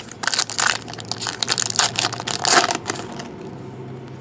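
Foil Topps trading-card pack wrapper crinkling and tearing as it is ripped open and crumpled by hand, a dense run of crackles lasting about three seconds.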